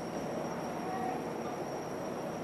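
Fire apparatus engines running steadily at idle in the firehouse bay, heard as a continuous even rumble and hiss mixed with the street's background noise.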